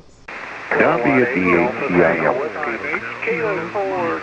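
A pileup of several amateur stations answering a call at once on 7.188 MHz single sideband, heard through the receiver: voices talking over one another in narrow, hissy radio audio, too jumbled for any one call sign to be pulled out. It starts a moment in, after a brief pause.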